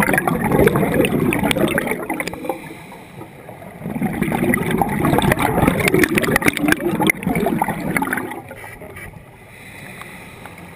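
Scuba diver's exhaled bubbles gurgling and crackling up past the camera underwater: two long exhalations, the second starting about four seconds in and ending near eight seconds, with quieter spells between.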